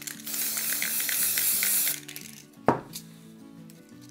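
Aerosol can of Cadence stencil spray adhesive sprayed onto a stencil in one continuous hiss of a little under two seconds. A single sharp knock follows about a second later, with soft background music throughout.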